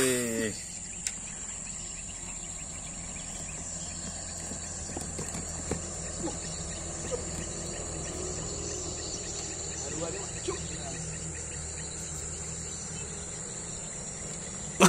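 Steady high-pitched insect drone, crickets or similar field insects, with a few faint clicks scattered through the middle.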